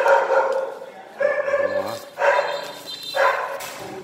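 A dog barking repeatedly: four loud barks, about one a second.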